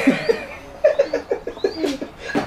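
Men laughing: a quick run of short laughing pulses from about a second in.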